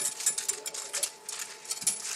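Quick crackling and rustling of things being handled, a dense run of small clicks and crinkles.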